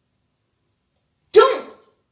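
Dead silence for over a second, then a man says one short word in French ("Donc").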